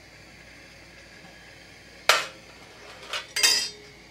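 5.56 brass cartridge cases clinking against metal with a bright ring, once about two seconds in and twice more just after three seconds, over the faint steady hiss of a propane torch flame.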